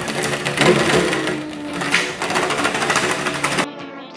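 Fast, loud ripping crackle of the adhesive backing being peeled off a self-adhesive RGB LED strip. It cuts off suddenly near the end.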